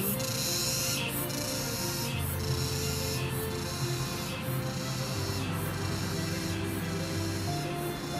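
Night chorus of crickets: a dense, high chirring that pauses about once a second, with background music of held low notes underneath.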